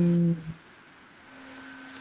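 A drawn-out spoken syllable trails off in the first moments, then a quiet pause in which a faint steady tone comes in partway through.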